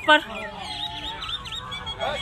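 A bird calling: a quick run of short, high, arched notes repeated several times a second, starting about half a second in.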